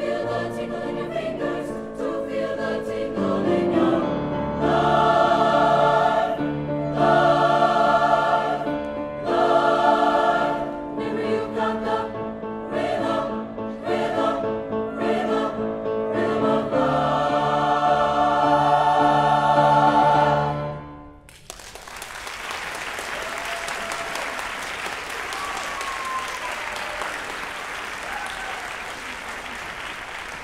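Mixed choir with piano singing the closing bars of an upbeat song, ending on a loud held chord that cuts off about two-thirds of the way in. Audience applause follows and continues steadily.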